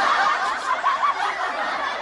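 A group of people laughing and chuckling together, many voices overlapping, slowly fading out.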